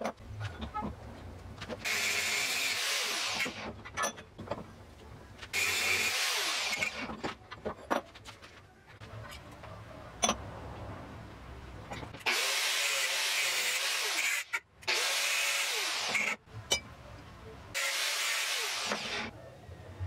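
Handheld angle grinder run on metal in five short bursts of one to two seconds each, starting and stopping suddenly, with small metallic clicks from handling parts at the vise between the bursts.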